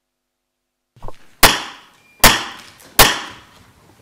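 Three loud, sharp knocks about three-quarters of a second apart, each echoing briefly in the courtroom. They are the signal that the court is entering, coming just before the call for all to rise.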